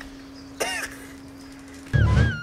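A man's short vocal cry about half a second in, over a faint steady hum; a loud low thud right at the end.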